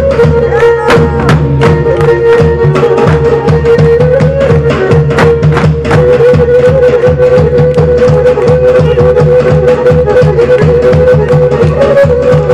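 Pontic folk music for the serra war dance: a sustained, ornamented melody line over a steady, driving drum beat.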